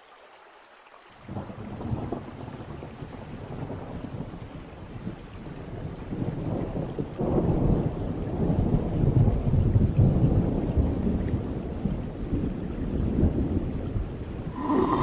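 Storm ambience of steady rain with rolling thunder, used as the intro of a dark ambient track. It fades in faintly, grows much louder about a second in, and swells again about halfway through.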